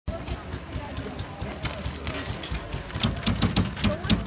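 Small steampunk car's wheel making a fast run of rhythmic clicks, about six a second, starting about three seconds in over a low running rumble. This is the funny sound the builders are trying to fix, which they put down to a wobbling back wheel.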